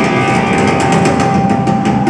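Live rock band playing at full volume: rapid, evenly spaced drum and cymbal hits over a held organ or guitar note, a closing drum fill at the end of the song.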